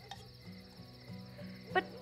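Crickets chirping steadily in a high, rapidly pulsing trill, over a low held background-music drone that shifts pitch a few times.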